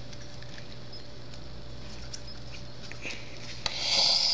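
Fingers working at a small plastic Play-Doh tub while trying to pry its lid open: faint, scattered clicks and scrapes of the plastic over a steady low room hum. Near the end, a louder, breathy, hiss-like noise swells up.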